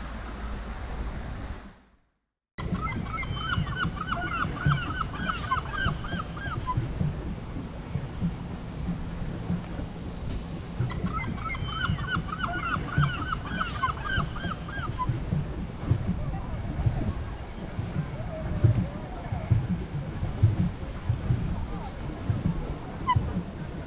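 Water lapping and wind noise on a lake, heard from a small boat, with two runs of rapid honking calls from geese about three seconds in and again about eleven seconds in. Before this there are a couple of seconds of wind noise, then a brief drop to silence.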